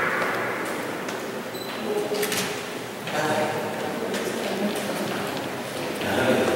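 Indistinct talk of several people in the background, with a short cluster of sharp clicks about two seconds in.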